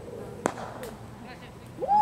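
Sharp crack of a cricket bat striking the ball about half a second in, followed near the end by a loud rising shout from a player calling for a run.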